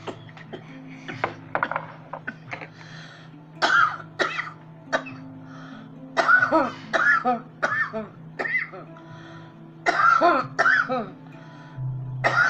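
A woman coughing hard in repeated fits into her hands, brought on by a lungful of cannabis smoke from a bong. The coughs come in clusters about three and a half seconds in, again around six to eight seconds, and near ten seconds. Soft music plays in the background.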